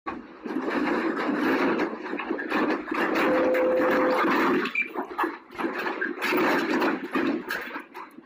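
Loud, rough rushing and rattling noise that swells and fades in uneven waves, typical of a room and its furniture shaking during an earthquake.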